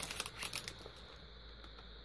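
Faint crinkling and rustling of a cellophane-wrapped pack of paper as it is handled and its sheets are flipped, mostly in the first second.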